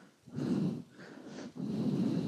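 A person breathing close to the microphone: two breaths, each lasting under a second.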